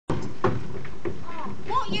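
Actors' voices on a theatre stage, heard from the audience over steady recording hiss, with two short knocks about half a second and a second in; near the end a voice cries out in a rising then falling pitch as a spoken line begins.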